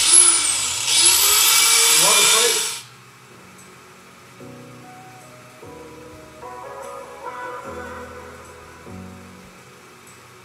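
Handheld narrow-belt power file (belt sander) spins up and runs against body sheet steel for about three seconds, grinding down spot welds. It cuts off suddenly, and background music follows.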